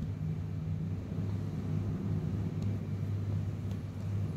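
A steady low hum under faint background noise, with no speech.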